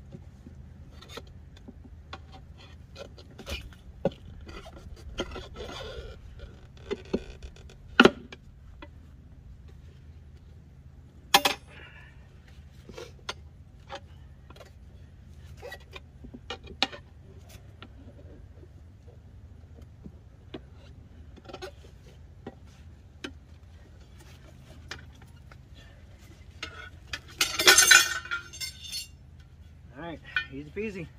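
Steel tire irons clinking and scraping against a steel tractor wheel rim while prying an old tire off it by hand. Scattered light clicks, two sharp metal clanks a few seconds apart in the first half, and a loud metallic rattle lasting about two seconds near the end as the rim comes free of the tire.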